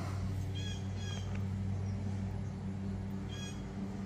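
Three short bird calls, about half a second in, a second in and about three and a half seconds in, over a steady low hum.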